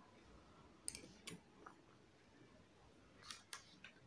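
Near silence with faint clicks of a metal spoon against a plastic yogurt cup as yogurt is scooped: two about a second in and two more near the end.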